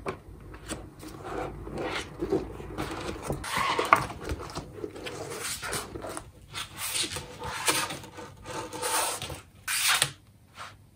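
Paper rustling: the pages of printed spiral-bound course books being flipped, then the books being slid and shuffled across a desk, in a string of irregular swishes. The strongest swishes come about four seconds in and just before the end.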